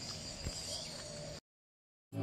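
Faint outdoor ambience that cuts off to dead silence about one and a half seconds in.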